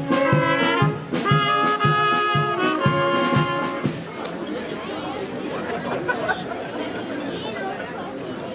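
A brass band playing a march with trumpets and a steady beat, which ends about halfway through. After it comes the murmur of many people talking.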